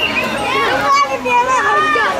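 Children's voices shouting and calling out at play, several high voices overlapping throughout.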